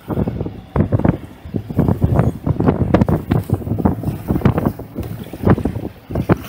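Wind buffeting the microphone in quick, irregular gusts aboard a sailboat under way.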